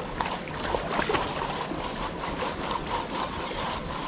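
Gravel being washed in a screened tub dipped in a flowing river: water sloshing and splashing with many small clicks, over the steady rush of the river.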